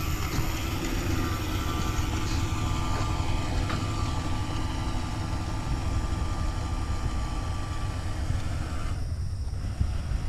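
A remote-control boat's motor whining steadily as the boat speeds away across the water, cutting out about nine seconds in, over a steady low rumble.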